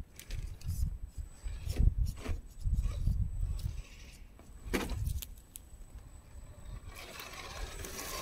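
Absima Sherpa 1:10 scale RC crawler climbing over tree roots: irregular low thumps and sharp clicks as its tyres and body knock over the roots. Its drivetrain grows into a louder, steadier hiss and whir near the end as it drives up close.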